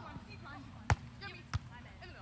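A beach volleyball struck twice by players' hands: a sharp smack about a second in and a softer one just over half a second later, with voices murmuring in the background.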